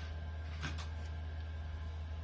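A few faint clicks from a Bosch washing machine's program selector dial being turned, about two-thirds of a second in, over a steady low hum. No beep sounds.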